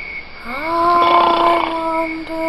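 A long, drawn-out vocal sound from a person, starting about halfway in, rising in pitch and then held steady.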